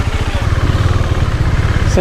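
Husqvarna Svartpilen 401's liquid-cooled single-cylinder engine running, getting louder from about half a second in as the motorcycle pulls away under throttle.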